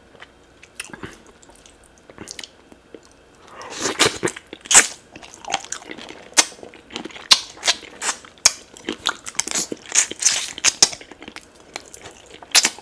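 Close-up eating of tilapia fish in pepper soup by hand: wet mouth sounds of biting and chewing. Mostly quiet with a few small clicks for the first three seconds or so, then a dense, loud run of sharp clicky, smacking mouth sounds.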